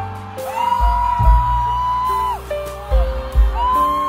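Live band music with a heavy, pulsing bass under a high lead line that slides up, holds for about a second and slides back down, twice.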